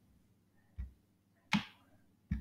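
Two short clicks in otherwise silent room tone, a faint one just before the middle and a sharper one a little past it that dies away quickly.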